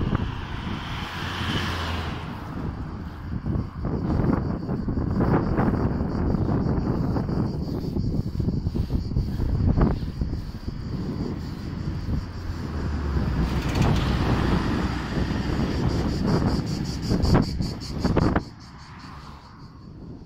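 Wind buffeting a phone's microphone while it moves along a street: a ragged, loud rumble with gusty peaks that drops away suddenly near the end.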